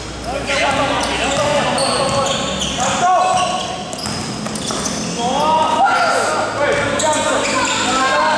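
Basketball being dribbled on an indoor court, with short squeals and voices calling out during play, echoing in a large gym.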